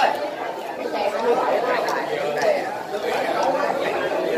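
Chatter of several people talking over one another, a steady babble of voices, with a few light ticks among it.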